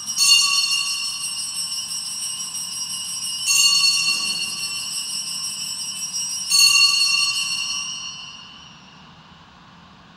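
Altar bells, a cluster of small hand bells, rung three times about three seconds apart as the consecrated host is elevated, each ring lingering and fading away.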